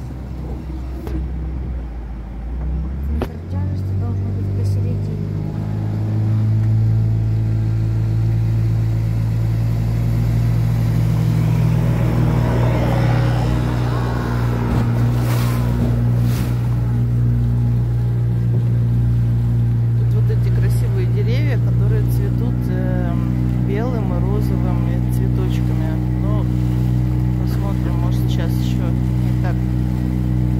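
Small boat's motor picking up speed about three seconds in, then running at a steady pitch under way on the river.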